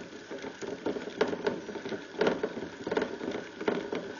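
A small pet rodent at its plastic exercise wheel in a wire cage, making irregular clicking and rattling noises in short bursts about once a second.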